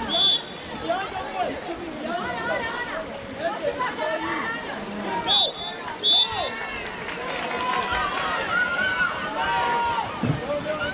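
Spectators shouting and calling out over one another around a water polo pool, cut through by three short, shrill referee's whistle blasts: one at the start, then two close together about five and six seconds in.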